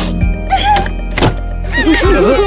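Cartoon background music with a few thud sound effects, the loudest about a second and a quarter in.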